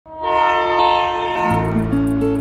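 A train horn sounding a steady chord of several held tones. About a second and a half in, music begins under it with a low bass note and a quick ticking beat.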